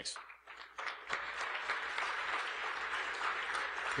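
Audience applauding: dense clapping that starts just after the word "thanks", fills in about a second in and holds steady.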